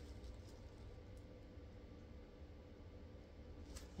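Near silence: room tone with a steady low hum and one faint click near the end.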